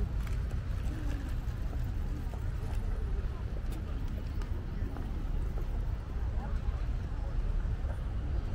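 Outdoor city ambience: a steady low rumble with faint voices of passers-by and a few light clicks of footsteps on paving.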